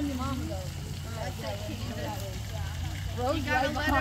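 Indistinct voices of several people, children among them, talking in the background over a steady low hum.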